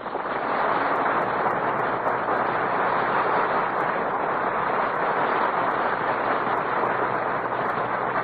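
Studio audience applauding steadily after a sung musical number.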